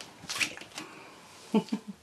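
A brief rustle and a couple of soft clicks: a felt-tip marker being handled and uncapped.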